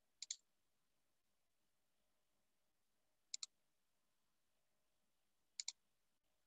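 Computer mouse clicking: three quick double clicks, a few seconds apart, over near silence.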